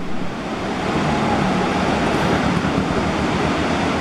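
Rocky mountain river rushing through whitewater rapids over boulders: a steady rushing of water.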